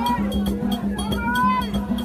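Haitian Vodou ceremonial music: a metal bell struck in a fast, even beat of about four strikes a second over percussion, with voices singing and calling above it.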